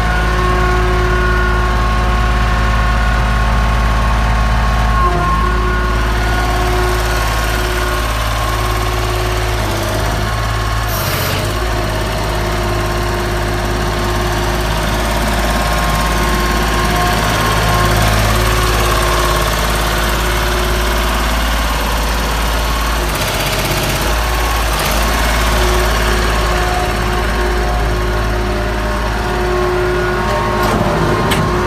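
An engine idling steadily, with a low hum and several steady tones that barely change, and a few short bursts of hiss.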